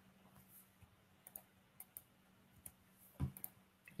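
Several faint, scattered clicks from operating a computer in a quiet room, with a slightly louder knock about three seconds in.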